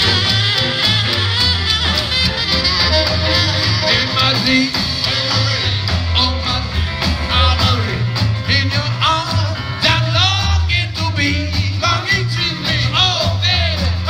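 Live rock and roll band with a swing feel, playing loudly: double bass and drums keeping the beat under saxophone and electric guitar.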